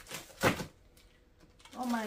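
A single sharp rustle or knock of paper and cardboard about half a second in, as papers are taken out of an opened cardboard box, with a lighter tap just before it. A woman starts speaking near the end.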